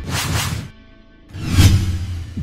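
Two whoosh sound effects over music, the first right at the start and the second about a second and a half in, each with a deep low end beneath it.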